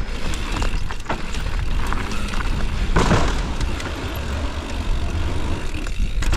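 Downhill mountain bike rolling fast over a dirt and gravel trail: tyre noise and rattling of the bike, with wind rushing over the microphone. A brief louder rush about three seconds in.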